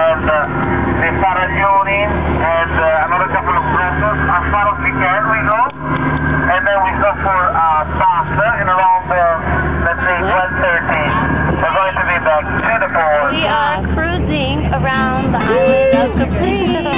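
Motorboat engine running with a steady drone under voices talking that cannot be made out. Near the end, acoustic guitar music comes in.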